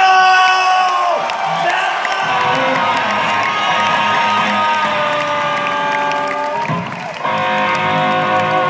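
Live rock band playing, with held electric guitar chords ringing out and the crowd cheering underneath. One chord fades about a second in, a long chord is held, and a new chord strikes up about seven seconds in.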